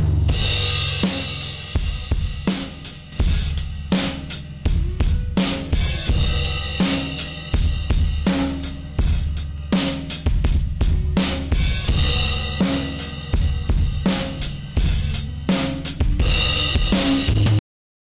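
Multitrack drum kit recording playing through a soloed parallel 'crush' bus of heavy compression and fuzz distortion: kick, snare and cymbals sound squashed and a lot more aggressive. Playback stops just before the end.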